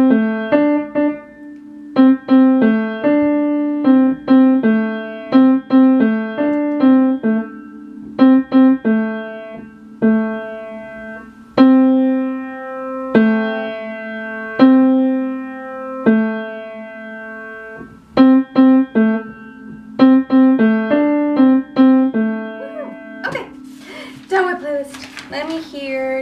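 Upright piano played by a beginner: a simple melody of separate notes in the middle register, in short phrases with a few longer held notes and brief pauses between phrases, stopping just before the end.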